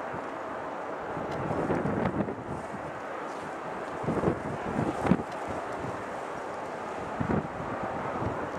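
Wind buffeting the microphone in irregular gusts, over the steady distant noise of a Boeing 777-200LR's GE90 turbofan engines on final approach.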